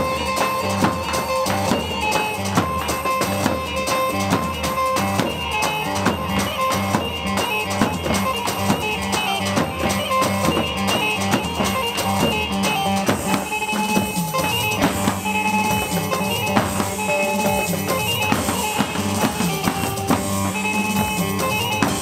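Live band playing halay dance music: a davul and a drum kit keep a steady beat under a held melody line.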